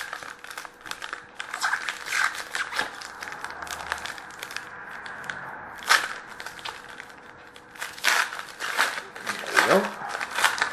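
Wrapper of a hockey card pack crinkling and tearing as it is pulled from the box and opened by hand, in a run of irregular sharp rustles that are loudest about six seconds in and near the end.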